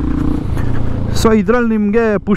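Royal Enfield Himalayan 450's single-cylinder engine running steadily under light throttle, with wind and tyre noise on the rider's microphone. A man's voice starts just over a second in.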